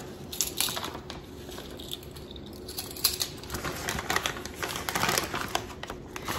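Plastic bag of coconut flour crinkling and rustling as it is handled and opened, with scattered light clicks and taps.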